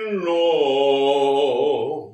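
A man singing unaccompanied, holding one long note. Its pitch slides down just after the start, then holds with a vibrato that widens near the end before the note fades.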